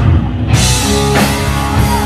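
Live hard rock band playing loud: a sustained keyboard and bass chord under the drum kit and electric guitar. The cymbals drop out for the first half second, then the full kit comes back in, with a cymbal crash about a second in.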